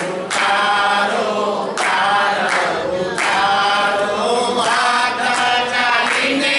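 A mixed group of men and women singing a devotional chant together in unison, with hand-clapping. Long held notes come in phrases that restart about every one and a half seconds.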